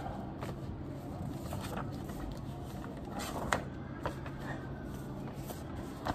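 Paper answer sheets being handled and leafed through at a desk: faint rustles and taps, with one sharper click about three and a half seconds in, over a steady low room hum.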